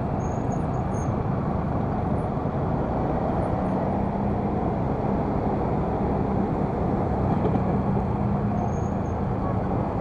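Motor scooter running at low speed in slow, dense traffic, with the steady rumble of surrounding motorbikes and cars. A steady low engine hum comes in about a third of the way through and fades out near the end.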